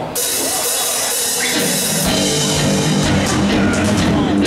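Live rock band starting a song on drums, electric guitars and bass. It opens with a sudden wash of cymbals, and a heavy low end of kick drum and bass comes in about two seconds in.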